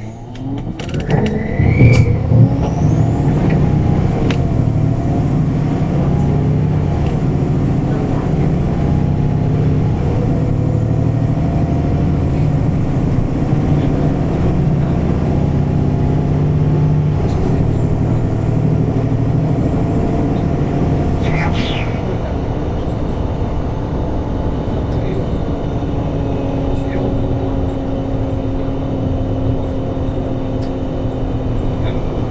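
Inside a MAN NL313F CNG city bus: its natural-gas engine and automatic gearbox pulling away and accelerating, rising in pitch over the first few seconds. It then runs steadily, a little quieter after about twenty seconds.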